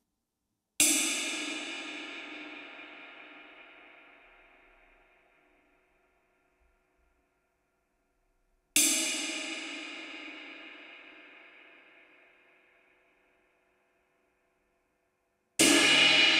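Istanbul Agop 22-inch Traditional Jazz ride cymbal struck singly with a wooden drumstick and left to ring out, each stroke fading slowly over about five seconds. Three strokes about eight seconds apart, the last near the end.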